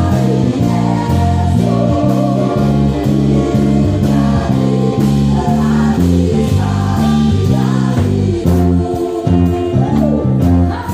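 Live gospel praise band: an electric bass plays a moving, prominent line under drums and singing voices.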